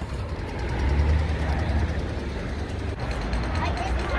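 Low rumble of road traffic, a heavy vehicle passing in the street, loudest about a second in.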